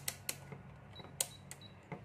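Rotary function switch of a Kyoritsu KEW 1021R digital multimeter being turned on to DC volts: a handful of sharp clicks from its detents, the loudest a little past a second in, with a faint high beep around the middle.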